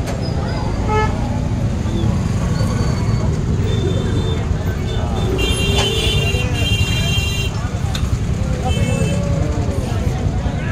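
Busy street ambience of traffic and crowd voices, with vehicle horns honking several times, the longest stretch from about five and a half to seven and a half seconds in.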